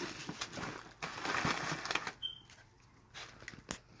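Crinkly white packing wrap rustling as it is pulled out of a cardboard box, for about two seconds, followed by a few light knocks and handling noises.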